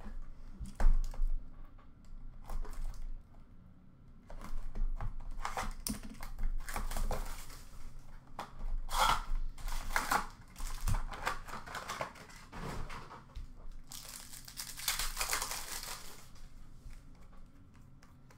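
Plastic wrapping and foil packs of an Upper Deck Allure hockey card box being torn open and crinkled by hand, with a sharp knock about a second in as the box is handled. Long stretches of crinkling and tearing follow, broken by small clicks.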